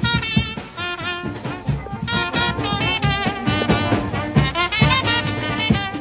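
Military brass band playing a tune, with trumpets leading and saxophone alongside, over a steady beat of bass drum and snare.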